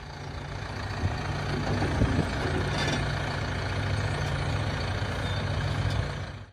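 John Deere tractor's diesel engine running steadily as the tractor drives down off a trailer, with a couple of clunks about one and two seconds in.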